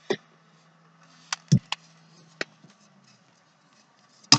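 A handful of short sharp clicks and knocks, five in about two and a half seconds, as a lid is pushed and turned onto a container.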